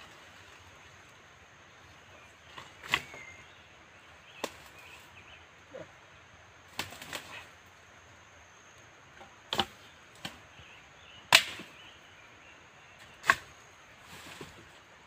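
A long wooden stick swung into jungle undergrowth, swishing and whacking into the plants about eight times at uneven intervals, the loudest strike a little before the end.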